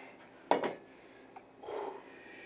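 A drinking glass set down hard on a counter. There is one sharp knock about half a second in, then a faint click and a short, softer noise near the end.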